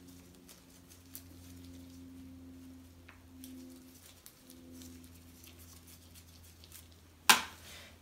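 Faint small clicks and scrapes of a metal Zebra F-701 pen being unscrewed and taken apart in gloved hands, over a steady low hum. About seven seconds in, a single sharp knock.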